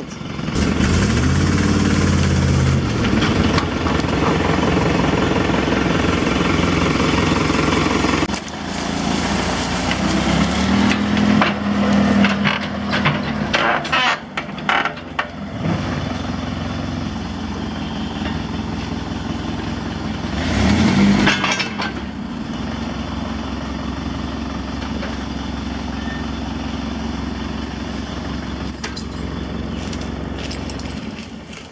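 Dump truck and Case 580 backhoe engines working hard under load while the backhoe is towed up off a soft ledge. The engine revs up in the first seconds and then runs loud and steady. There are a few sharp knocks about halfway through, and a loud surge a little after two-thirds of the way, before the engines settle to a quieter, steady run.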